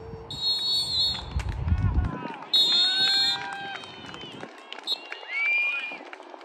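Referee's whistle: two long blasts about two seconds apart, the second the loudest, then a short third toot. Players and spectators shout across the field around them.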